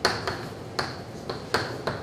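Chalk writing on a blackboard, with several sharp taps as the chalk strikes the slate, the first and loudest right at the start.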